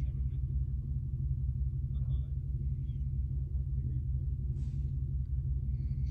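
Ford Mustang GT's 4.6-litre two-valve V8 idling steadily with the hood up, a low even rumble heard from inside the car.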